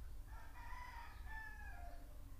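Faint bird call in the background: one long pitched call lasting about a second and a half, dropping in pitch near the end.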